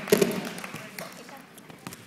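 Indistinct voices murmuring in the background, with a few scattered sharp taps.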